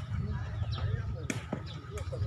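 Sepak takraw ball being kicked back and forth: sharp knocks, two in quick succession about a second and a half in and another at the very end.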